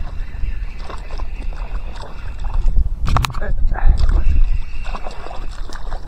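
A small hooked pike splashing at the water's surface as it is reeled in, with sharp splashes about three seconds in, over a loud, steady low rumble.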